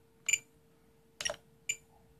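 Three short electronic beeps and clicks from a Spektrum DX8 transmitter as its roller is scrolled and pressed through the mixing menu, over a faint steady hum.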